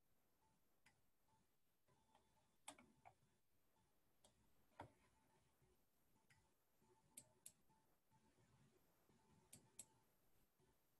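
Near silence with faint, scattered clicks of a computer mouse, about ten of them, some in quick pairs.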